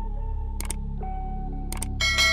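Background music with steady low notes, overlaid by mouse-click sound effects: a quick double click just over half a second in and another near the end.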